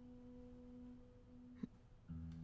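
Near silence: a faint steady low tone holds throughout, with a single soft click about one and a half seconds in.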